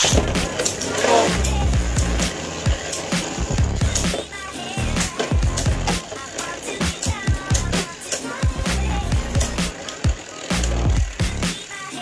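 Two Beyblade Burst tops spinning and colliding in a clear plastic stadium: a steady scraping whir broken by many sharp plastic clacks as they strike each other and the stadium wall. Background music with a steady beat plays underneath.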